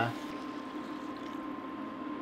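Water poured from a glass measuring cup into a hot pot of browned ground beef and chili spices, with a steady hiss of sizzling liquid.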